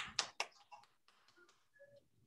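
Hands patting a ball of arepa dough between the palms: three quick pats in the first half-second, then a few fainter ones.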